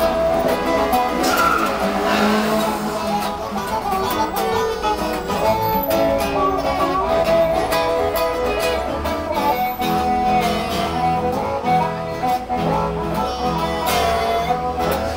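Acoustic guitar playing a blues shuffle, with a blues harmonica playing sustained, slightly bending notes over it. There is no singing.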